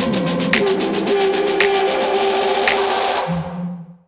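Background music with a steady beat and a swelling rise, fading out just before the end.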